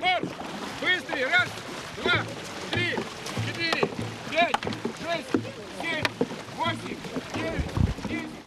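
Dragon boat crew paddling, with short, high-pitched rhythmic shouts about every three-quarters of a second over the wash of water and low thumps in time with the stroke.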